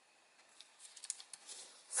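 Faint, scattered crinkles and light taps of origami paper being creased and pressed flat by hand. The sounds come mostly in the second half.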